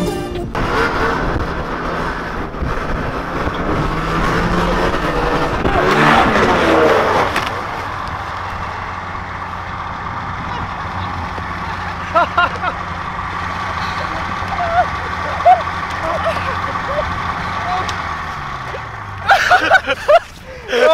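Snowmobile engine running under throttle as the sled rides and jumps through deep snow, rising to its loudest about six seconds in, then running steadier and quieter, its pitch falling near the end.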